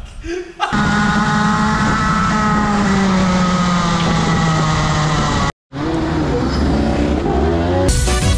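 Rotax Max 125cc single-cylinder two-stroke kart engine at high revs, heard on board, its pitch slowly falling over about five seconds before cutting off abruptly. After a short gap the engine is heard again with its revs rising.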